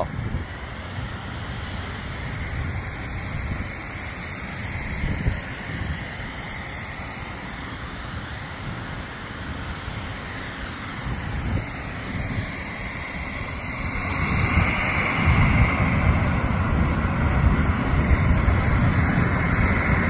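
Outdoor wind buffeting the microphone over a steady low rumble of background noise, growing louder about two-thirds of the way through.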